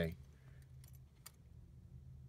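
A few light jingles and clicks of keys over a low steady hum inside a car's cabin.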